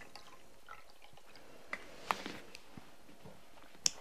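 Water poured from a plastic bottle into a cut-glass vase, heard faintly as a few scattered drips and trickles. A light click near the end.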